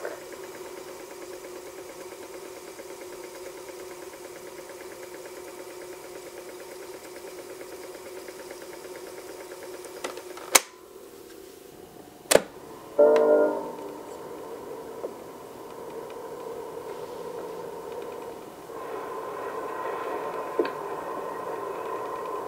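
Sony-matic quarter-inch reel-to-reel tape recorder winding tape with a steady motor hum. Two sharp clicks of its function knob come about ten and twelve seconds in, followed by a short burst of pitched sound. The hum then goes on, growing louder near the end.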